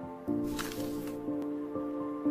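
Short intro jingle: held chords, with new notes entering a few times and a whoosh sound effect about half a second in.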